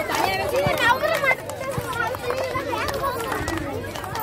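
Many women's and children's voices calling out and chattering at once during a group game, several voices overlapping.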